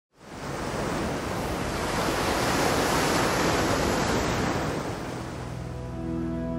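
Ocean waves on a rough sea: a steady rushing wash of surf that fades in at the start and eases off near the end, as music begins to come in.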